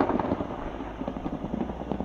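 Thunder rumbling and dying away, a recorded sound effect, dropping to a lower level near the end.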